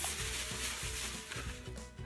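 Rustling and rubbing as a store-bought decoration is pulled out and handled, loudest in the first half second, over soft background music.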